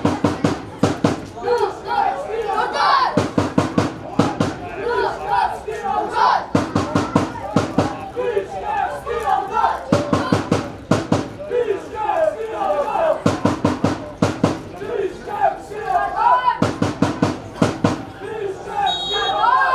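Supporters beating a drum in short bursts of quick strokes, a burst about every three seconds, with fans' voices calling and chanting over it.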